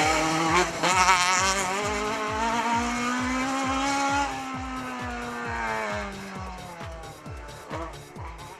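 Toyota rally car's engine pulling hard past and away up the stage, its note climbing over the first few seconds, then slowly dropping and fading as the car draws off. A steady music beat runs underneath.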